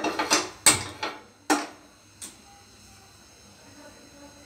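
Gas stove igniter clicking: about five sharp clicks at uneven intervals over the first two seconds, then quiet.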